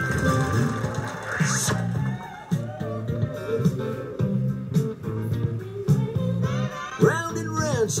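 IGT Hot Roulette slot machine's bonus-round music: a repeating plucked guitar and bass riff. The machine's announcer voice starts right at the end.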